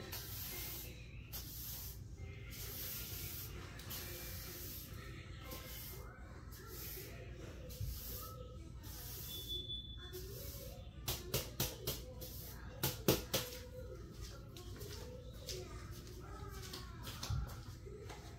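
Broom bristles sweeping a tile floor in repeated hissing strokes, followed a few seconds later by a quick series of sharp knocks, with soft background music underneath.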